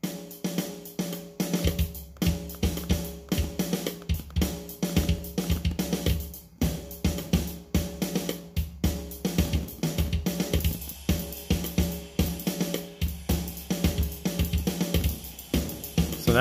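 EZDrummer 2's sampled drum kit playing back through a studio monitor: a closed hi-hat pattern of quick, even ticks, joined about one and a half seconds in by bass drum hits being tapped in.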